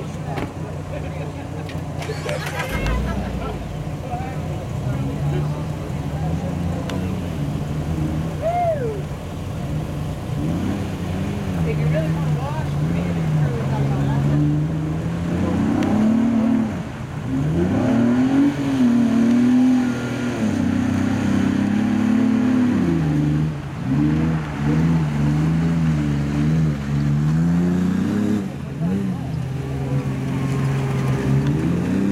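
Jeep Wrangler's engine running steadily, then revving up and down again and again under load from about a third of the way in as it works through mud.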